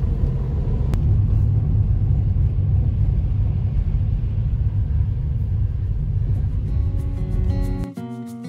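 Steady low road rumble of a car driving through a road tunnel, heard from inside the cabin, with a single sharp click about a second in. Background music fades in near the end.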